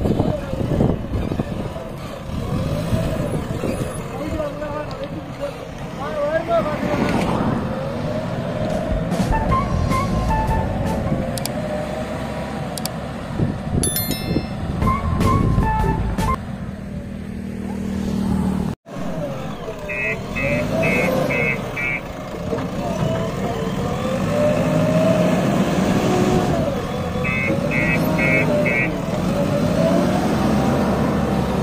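JCB 3DX backhoe loader's diesel engine running under load as it drives and works the ground, with people talking over it. Two short runs of rapid high beeps come through about two-thirds of the way in and again near the end, and the sound drops out for an instant between them.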